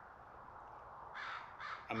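A crow calling twice in quick succession, two short harsh caws about a second in.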